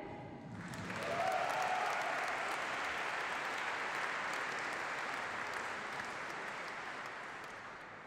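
Audience of seated dinner guests applauding. It swells in about half a second in and slowly dies away.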